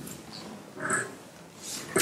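A pause in a man's talk: quiet room tone with one short, soft breathy sound from a person about a second in.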